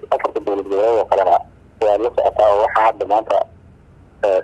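Speech only: a man talking in Somali, with a short pause about halfway through.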